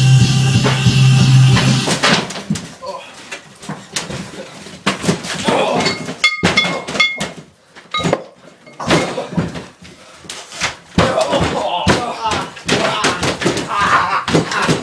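Rock music that cuts off about two seconds in, followed by a string of sharp thuds and slams as wrestlers hit and scuffle on a homemade ring's padded wooden floor, with muffled voices between them.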